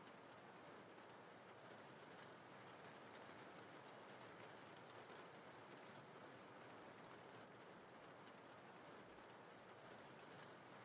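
Faint, steady rain sound, close to silence.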